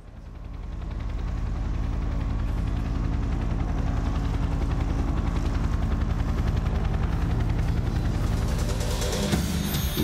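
A low, steady pulsing rumble, like an engine or rotor drone, played as the show's opening effect over a theatre sound system. It fades in over the first second or two and holds, then changes near the end as the intro music comes in.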